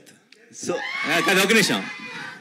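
A man's voice, animated and high-pitched, starting about half a second in after a brief pause.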